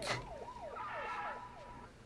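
Faint emergency-vehicle siren in the film's sound, a steady high tone with quick downward pitch sweeps about five times a second, fading out near the end.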